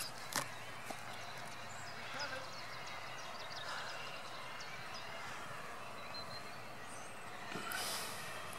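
Quiet outdoor background hiss with faint, scattered high bird chirps.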